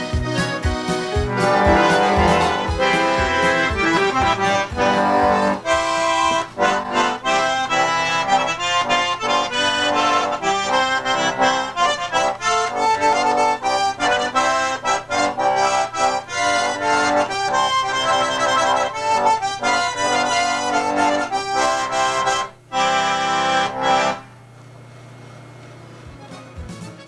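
A small diatonic button accordion (melodeon) playing a traditional tune, note after note in a steady rhythm. Near the end the playing stops, leaving only a low background hum.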